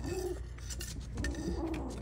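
A black kitten growling at a hand during play, two small, low, wavering growls: a short one at the start and a longer one a little past the middle. Light clicks and scrapes of play sound between them.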